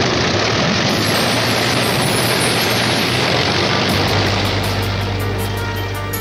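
Piston engines of P-51 Mustang fighters running on the ground, a loud, steady engine noise. Music fades in about four seconds in as the engine noise eases.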